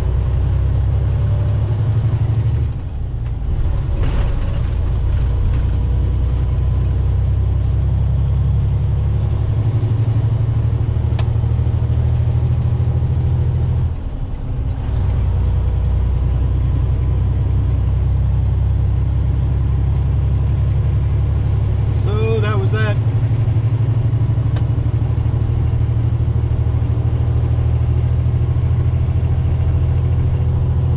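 Inside a semi-truck cab at highway speed: the steady low drone of the truck's engine and road noise, dipping briefly about three seconds in and again about fourteen seconds in.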